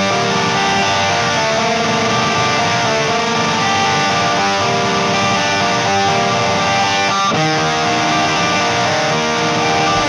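Metal music: a passage of strummed, layered electric guitars holding steady chords, without drums.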